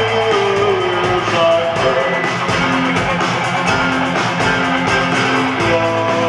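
Rock band playing live on stage: electric guitar, bass guitar, drums and synthesizer keyboards, with held guitar notes and a steady drum beat.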